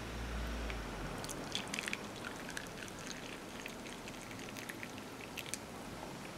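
Tea pouring from a glass teapot into a ceramic cup: a faint trickle with many small scattered splashes and ticks.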